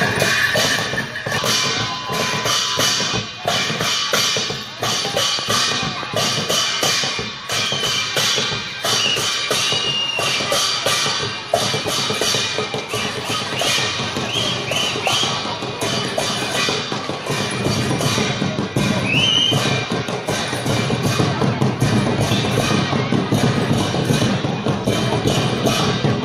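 Newari dhime drums, double-headed barrel drums, played live in a fast, driving beat of dense repeated strokes.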